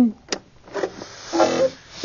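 EverSewn Sparrow X sewing machine being restarted: a sharp click of the power switch, then a short mechanical whirr as the machine powers back up.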